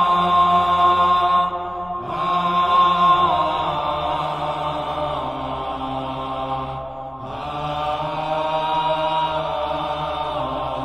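Slow, sustained sacred chanting as background music: long held notes that shift pitch in slow steps, with brief pauses between phrases about two seconds in and near seven seconds.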